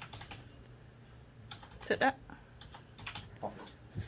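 A few light, irregular clicks and taps in a quiet small room, with a brief spoken phrase about two seconds in.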